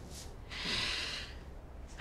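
A person's single audible breath out, a soft hiss about a second long.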